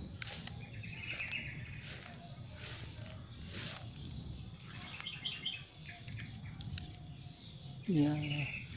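Small songbirds chirping in quick, high trills, twice, over low rustling and handling noise as brush and leaves are pushed aside.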